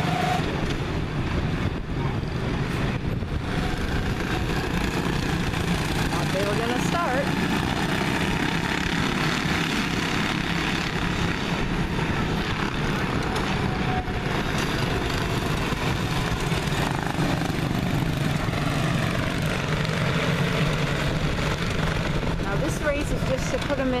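A pack of Honda-powered quarter midget race cars running around the oval, a steady engine drone that carries on without a break.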